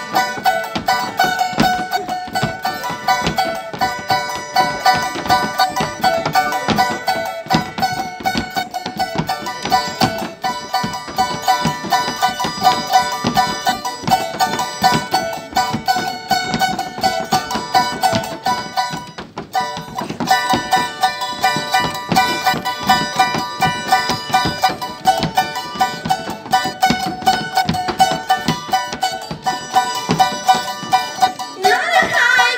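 Andean folk music: a charango strummed fast in a steady rhythm, with a held melody line sounding above it. The playing drops out briefly about two-thirds of the way through.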